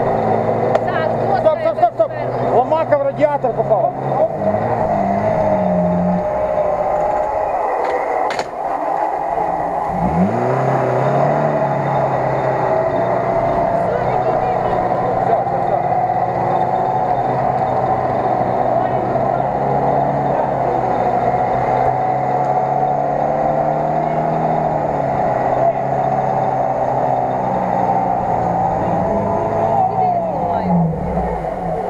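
Off-road 4x4 engine revving hard while the vehicle churns through deep mud, its pitch climbing and dropping repeatedly, with a sharp climb about ten seconds in.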